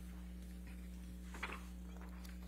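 Quiet room tone with a steady low electrical hum, and a brief faint rustle of paper about one and a half seconds in, as transcript pages are handled.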